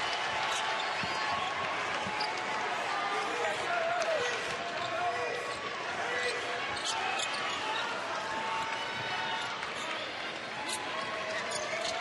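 Basketball dribbled on a hardwood court, its bounces heard as scattered short thuds over the steady murmur and voices of an arena crowd.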